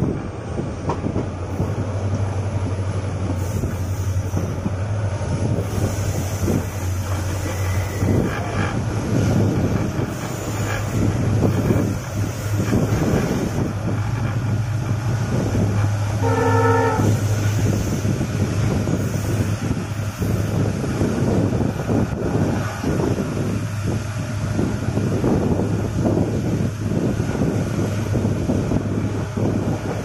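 Passenger express train running at speed, heard from an open coach door: a steady low rumble with the irregular clatter of wheels on the track and wind. About halfway through comes one brief horn blast.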